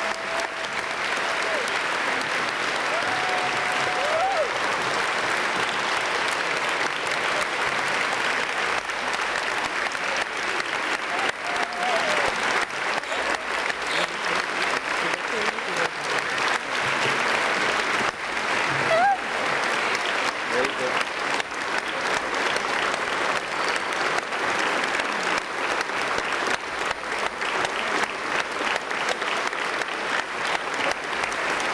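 A large hall audience applauding steadily without a break, with a few voices calling out above the clapping now and then.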